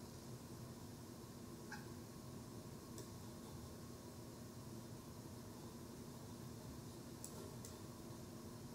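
Faint steady hum with a few light clicks: one a little under two seconds in, one at about three seconds, and two close together near the end.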